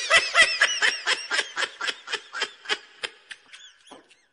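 High-pitched snickering laughter in a quick run of short 'ha' pulses, about five a second, fading away near the end.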